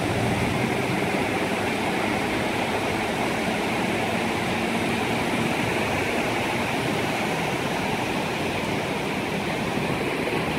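Ocean surf breaking and washing up a sandy beach, heard as a steady rush of water.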